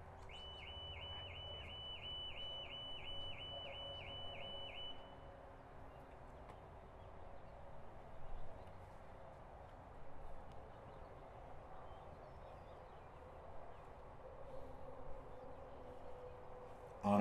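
A songbird singing a quick run of about a dozen identical high notes, roughly two or three a second, for the first five seconds. After that only faint outdoor background remains.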